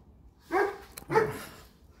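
A dog barking twice, two short barks about two-thirds of a second apart.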